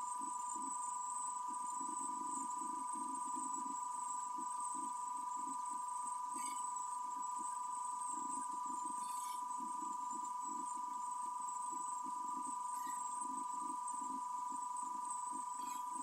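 A running battery-fed motor and DC boost converter rig: a steady high electrical whine over a faint flickering hum, with a few faint ticks.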